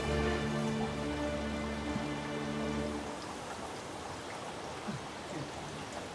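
Water spattering from a watering can onto garden plants, a steady fine patter. Held low music notes play over it for the first half and then stop.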